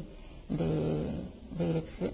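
A woman's voice: a long, drawn-out hesitation sound about half a second in, then a brief syllable near the end.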